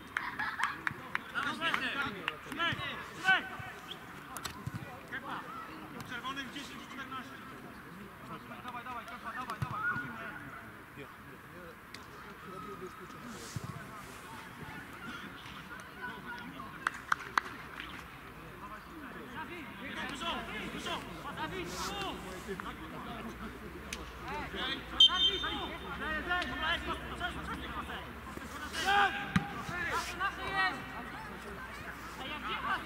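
Distant players' shouts and calls across an outdoor football pitch, with a few sharp knocks. A short referee's whistle blast comes about 25 seconds in.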